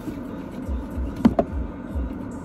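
Steady low rumble inside a car cabin, with a few soft low thumps in the second half. Just past halfway comes one brief, sharply rising squeak, the loudest sound.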